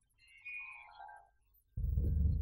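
Background score: a short falling tone, then dramatic music that comes in suddenly with a deep bass note near the end.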